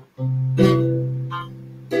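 Nylon-string classical guitar strumming chords. A chord is struck just after the start and rings on, fading slowly, and another chord is struck near the end.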